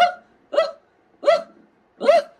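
A man laughing in three short, high-pitched yelps, each rising in pitch, with brief silences between them.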